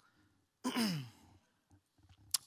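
A person's short, breathy sigh with a falling pitch, lasting about half a second and starting a little over half a second in.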